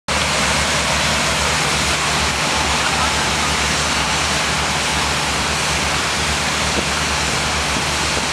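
Loud, steady rush of high-volume water flow from big-flow fire pumps and monitor streams, with a low hum underneath, starting abruptly just as the audio begins.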